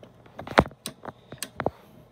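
A few sharp clicks and knocks of a Western Electric 500 rotary desk phone's plastic housing being handled and turned over, the loudest a little over half a second in.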